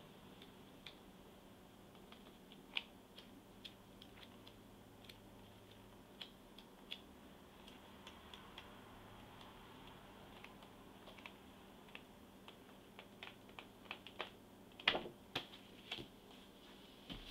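Sheets of a scrapbook paper pad being flipped one after another, each page edge giving a faint, irregular click or flick, with a quicker, louder run of clicks near the end.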